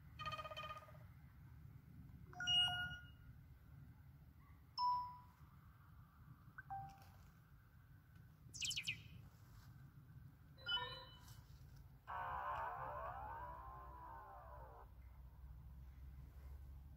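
The stock notification tones of a Cubot Quest Lite 4G phone, played one after another through its speaker as each is selected: about seven short, different chimes and beeps, one every second or two. A high chirping one comes about eight and a half seconds in, and a longer melodic tone of about three seconds near the end.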